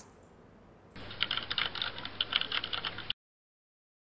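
Rapid computer-keyboard typing clicks as a sound effect. They start about a second in, run for about two seconds, stop abruptly and are followed by dead silence.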